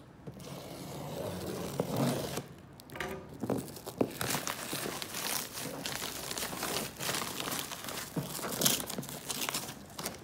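Plastic stretch-wrap film crinkling and tearing in irregular bursts as it is slit with a utility knife and pulled off a cardboard box.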